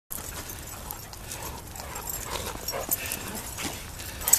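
Two dogs play-wrestling in snow: scuffling with a few short dog vocal noises.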